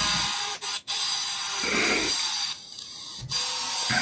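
Steady machine-like noise with a faint whine in it, heard over a video-call microphone; it drops out for about half a second past the middle and then resumes.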